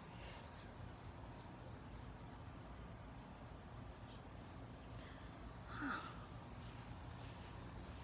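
Faint outdoor ambience: a steady low hiss and rumble with faint, repeated high chirps like insects. One brief, louder chirp-like sound comes about six seconds in.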